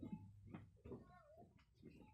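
Near silence, with a few faint, brief high-pitched child's squeals that bend in pitch.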